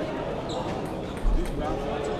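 Sharp clicks of a celluloid table tennis ball bouncing off a table and bats, heard over the voices in a sports hall. A short, dull low thump comes a little over a second in.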